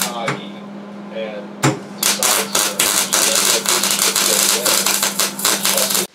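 MIG welding arc crackling and spitting as a malleable iron fitting is welded onto a steel gas-bottle tank, over a steady electrical hum. The arc thins out shortly after the start, restarts with a sharp click a little under two seconds in, then crackles steadily until it cuts off.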